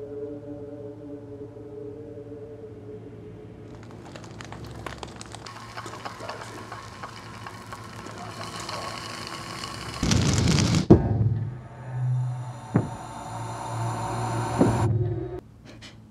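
Suspense film sound design: a steady drone gives way to a building crackling, hissing texture, then a sudden loud hit about ten seconds in, followed by a low hum and a few sharp knocks, cut off abruptly near the end.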